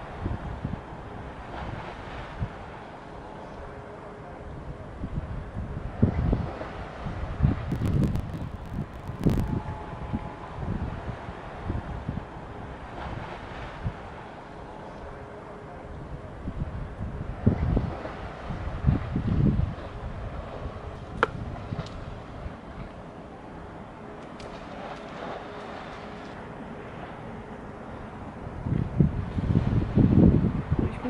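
Wind buffeting the camera microphone in low, rumbling gusts that come and go in several bouts, the strongest near the end.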